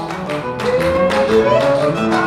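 Instrumental passage of a Colombian sanjuanero: a violin carries a gliding melody over a steady strummed accompaniment of tiple and guitar.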